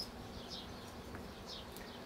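A faint steady insect-like buzz with several short, high, falling chirps at irregular moments over it.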